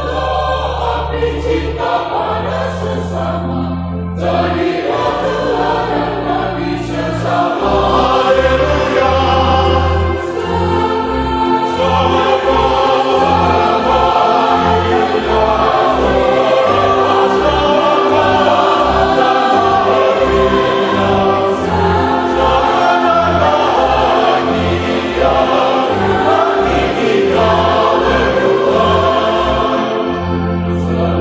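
Choir music with instrumental accompaniment. Long held bass notes at first, then a pulsing bass line from about seven seconds in.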